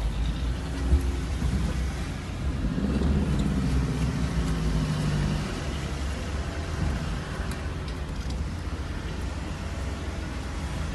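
Steady low rumble of a Suzuki Alto's engine and tyres heard from inside the cabin as it creeps through a toll plaza, with a brief thump about a second in and a humming engine note standing out for a few seconds mid-way.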